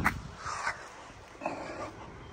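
A sharp click right at the start, then two short animal calls about a second apart.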